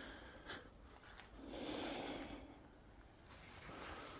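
Faint rustling of someone moving through leaf litter and twigs with the camera, with a soft click about half a second in and a gentle swell of rustle around the middle.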